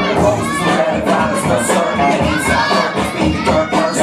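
A crowd of spectators shouting and cheering, with children's voices prominent, over music with a steady beat.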